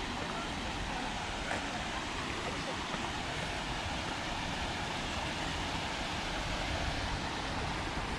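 Steady rushing of river water spilling over a small weir, with a low rumble of wind on the microphone.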